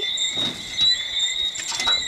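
Steady high-pitched chirping of an evening insect chorus, with a short rustle about half a second in and a few quick knocks or scrapes near the end.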